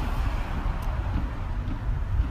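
Outdoor street background noise: a steady low rumble with no distinct events.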